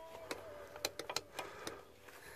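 Light, irregular metallic clicks of a spanner working the 11mm brake pipe union nuts on a brake master cylinder, about six in a couple of seconds.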